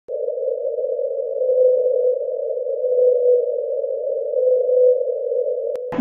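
A steady humming tone, a narrow band around one mid-low pitch, that swells louder briefly three times and cuts off abruptly with a click near the end.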